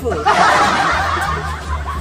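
A burst of laughter, starting about a quarter second in and dying down after about a second.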